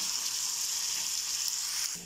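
Diced ham frying in hot oil in a pan: a steady sizzle that cuts off just before the end.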